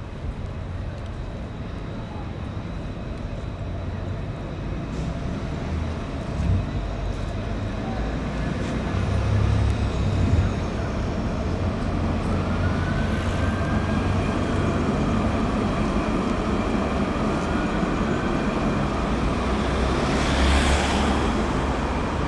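Steady city-street traffic noise with a low rumble that grows louder as a Luas light-rail tram passes, a whining tone gliding up and down in pitch about halfway through. Near the end a brief hiss of noise rises and fades.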